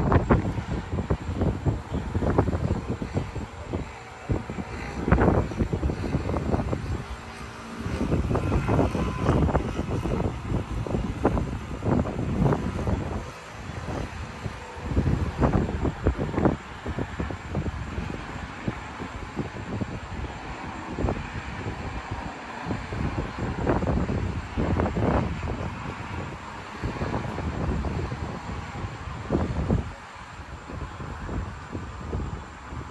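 Gusty wind buffeting the microphone: an uneven low rumble with irregular loud surges throughout.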